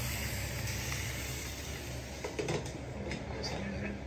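Steady hiss of food cooking in covered pans on an electric stove, with a few light clicks of lids or utensils about halfway through.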